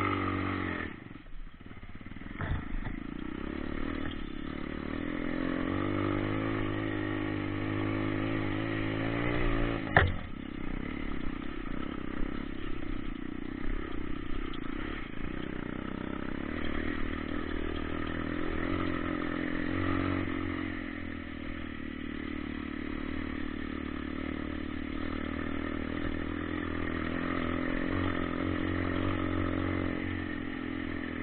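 Dirt bike engine running under way, its note rising and falling with the throttle, dipping briefly about a second in. A single sharp knock about ten seconds in is the loudest sound, with some clatter from the bike over rough ground.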